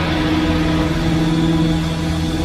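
Rock song in a sustained droning passage: a low held chord over a steady rumble, with no drums or sharp attacks.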